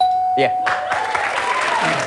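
Game-show puzzle-board chime as one letter (a T) is found: a single held electronic tone lasting just under a second. Studio audience applause starts a moment after it.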